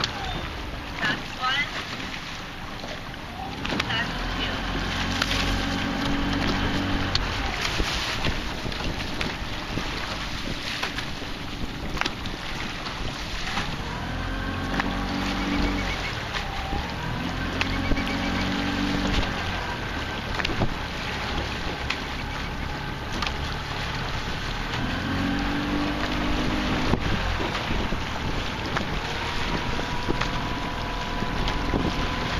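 A motor boat runs at low speed, its engine hum rising and falling in pitch every few seconds, with wind on the microphone and scattered sharp clicks.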